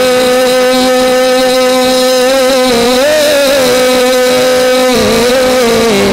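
Male naat singer, amplified through a microphone, holding one long unbroken note for about five seconds, wavering slightly midway and shifting pitch near the end, over a lower steady drone.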